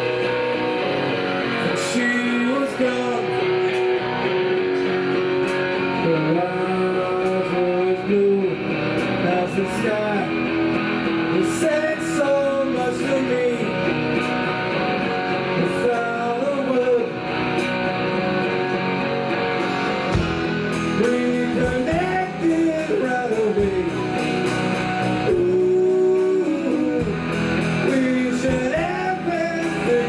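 Live rock band playing an electric song: strummed electric guitars and a drum kit under a man singing lead.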